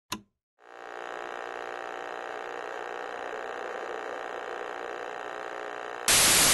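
A steady electronic drone with many overtones, fading in about half a second in after a brief click, and holding unchanged: the sound bed of a logo intro.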